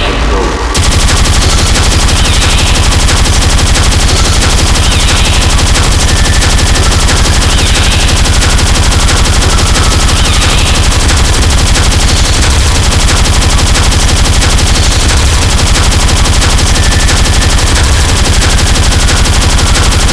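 Speedcore electronic music: a dense, unbroken stream of very fast, heavily distorted kick drums filling the whole range. The sound thins out briefly right at the start, then comes back in full.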